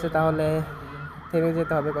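Electronic vehicle horn in road traffic, sounding a run of short, flat-pitched toots, several in a row.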